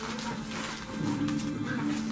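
Plastic chip bag crinkling as a hand rummages inside it, over background music with a steady held note; a second, lower held note joins about a second in.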